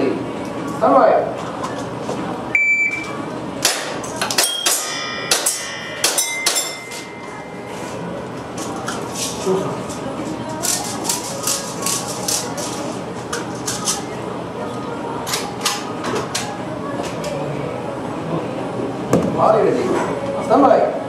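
A shot timer's electronic beep, then a run of quick airsoft pistol shots with steel plate targets ringing as they are hit, in two bursts.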